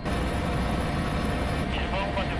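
Shipborne helicopter in flight, heard from inside the cockpit as a steady engine and rotor noise. A crew member's voice starts near the end.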